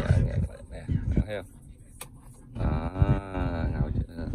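A talk-radio broadcast plays through a car's speakers. A short word comes early, then a sharp click about two seconds in, then a voice drawing out a long sound for about a second, its pitch rising and falling.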